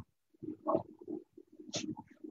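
A spatula stirring and scraping a thick green-pea paste in a pan, in a string of short, irregular scrapes and squelches with a sharper scrape near the end. The paste is being slowly roasted (bhuna) in ghee to cook off its raw flavour and moisture.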